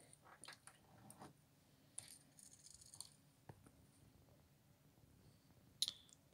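Near silence in a small room, broken by a few faint, short clicks and light rattles, mostly in the first half.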